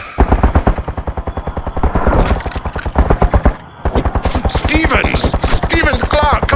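Automatic gunfire sound effect: two long, rapid bursts of about a dozen shots a second, with a short break about three and a half seconds in. A voice comes in over the second burst.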